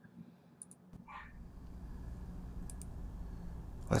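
A few faint computer mouse clicks while the headset microphone is being switched on in the streaming program. About a second in, a low steady hum comes in and slowly grows louder.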